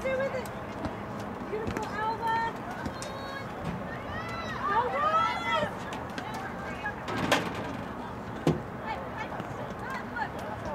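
Voices shouting and calling across a soccer field during play, the calls rising and falling in pitch and bunched together a few seconds in. A single sharp knock stands out about seven seconds in.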